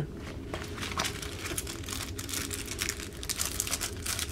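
Irregular crinkling of thin plastic packaging and rustling as small kit items are handled and pulled from a fabric pouch, over a low steady hum.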